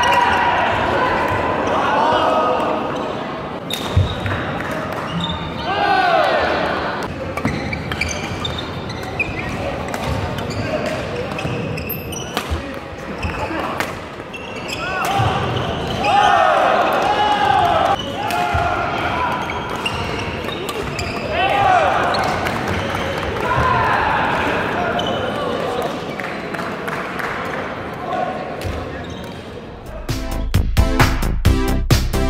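Badminton doubles rally on an indoor court: sneakers squeaking repeatedly on the hall floor and sharp racket strikes on the shuttlecock, in a reverberant sports hall.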